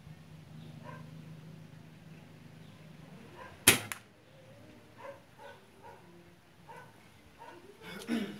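A single shot from a B12 air rifle in 4.5 mm calibre, firing a Snipe pellet. It is a sharp crack about halfway through, with a short second snap right behind it.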